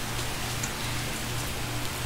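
Room tone: a steady hiss with a low, steady hum beneath it.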